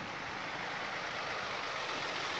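Tractor pulling a train of trailers loaded with empty wooden fruit bins, heard from the trailers: a steady, even rolling noise of engine and moving trailers.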